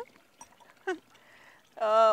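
Speech only: a short spoken syllable about a second in, a quiet pause, then a voice starting to speak loudly near the end.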